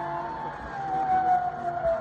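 Zipline trolley's pulley wheels running along the steel cable, a single whine that slowly falls in pitch.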